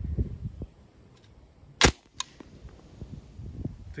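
A single shot from a suppressed submachine gun, a sharp report a little under two seconds in, followed a moment later by a fainter sharp crack.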